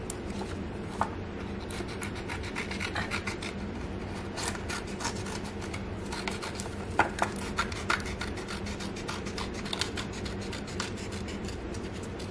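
Scissors cutting a temporary tattoo's paper sheet: a steady run of small snips and paper scraping, with a few sharper clicks of the blades.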